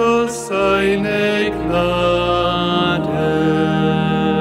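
A voice singing the closing line of a responsorial psalm refrain in slow, held notes over sustained low accompaniment notes.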